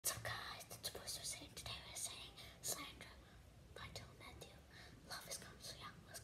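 A girl whispering softly in short, breathy phrases, with brief pauses between them.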